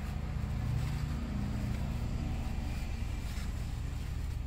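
Steady low background rumble, with faint rustles of tissue paper being handled near the end.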